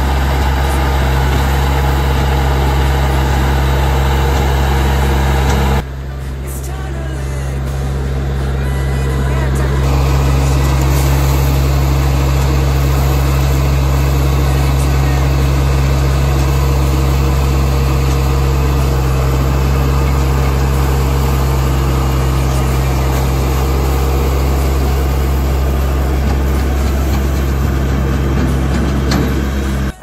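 Branson 3520H tractor's diesel engine running steadily under load while its front loader works gravel, with a rushing hiss of rock spilling from the bucket. The sound dips abruptly about six seconds in and then builds back.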